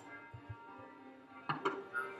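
Background music with steady tones, broken by a few sharp light knocks from matcha-making utensils: a bamboo tea scoop, a lacquered tea caddy and a ceramic bowl. Two knocks come close together about one and a half seconds in, and a third comes at the end.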